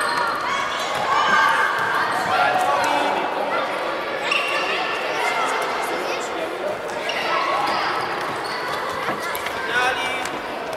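Children shouting and calling in high voices in an echoing sports hall, with the thuds of a futsal ball being kicked and bouncing on the wooden floor and the patter of running feet.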